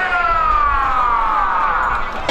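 A long, high wailing tone that slides slowly and steadily down in pitch.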